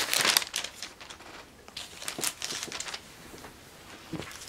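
Crinkling of a silver plastic mailer bag being handled and set aside, loudest in the first half-second, then a few fainter rustles.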